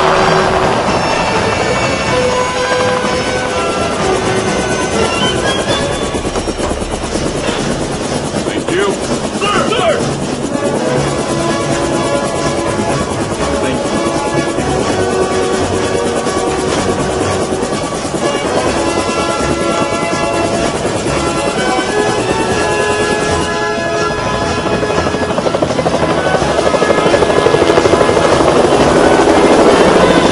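Helicopter running steadily, its rotor chop and engine noise heard under a film-score music track, growing louder near the end.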